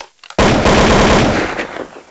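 A loud burst of rapid automatic gunfire, starting about half a second in and dying away near the end.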